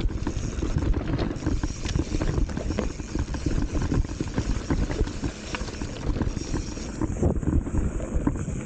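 Commencal Meta HT hardtail mountain bike descending rough, rocky dirt singletrack: a steady rumble of knobby tyres on dirt and stones, with constant irregular rattles and knocks from the bike over the bumps, and wind buffeting the microphone.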